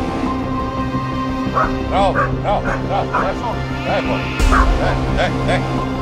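A dog yelping and barking in a quick run of short calls, about three a second, starting about a second and a half in, with a low thump on the microphone about two-thirds of the way through.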